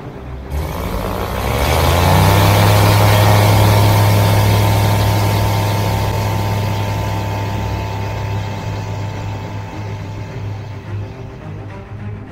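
Ultralight aircraft's propeller engine throttling up to full power for the takeoff roll, heard inside the cockpit. Its pitch rises over the first two seconds, then it runs steadily and grows gradually quieter over the second half.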